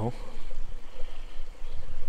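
A steady rushing noise with no clear pitch.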